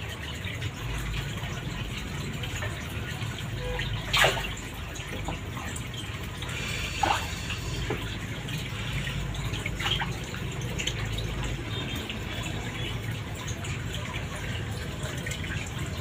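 Water from an aquarium's overhead top filter trickling and bubbling steadily into the tank, with a few brief sharp sounds about four, seven and ten seconds in.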